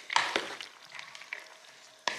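Wooden spoon stirring cooked macaroni elbows with shredded cheese, butter and half-and-half in a bowl. A few wet scraping strokes come in the first half-second, then fainter stirring toward the end.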